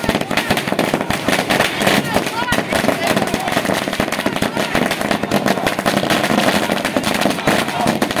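A long string of firecrackers bursting in rapid, unbroken succession, a dense stream of sharp bangs, with people's voices mixed in.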